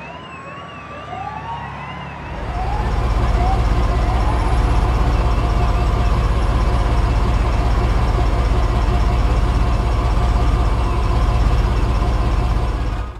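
A police siren wailing and yelping. About two seconds in, a car engine's deep, steady rumble comes in and becomes the loudest sound.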